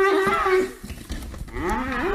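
A cow mooing: a long call that ends about half a second in, then a short gap, and another call beginning near the end.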